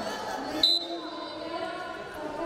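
Referee's whistle, one short blast a little over half a second in, restarting the wrestling bout, over voices in a large hall.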